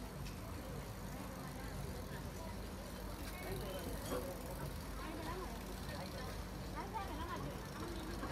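Street ambience: faint voices of people nearby over a steady traffic hum.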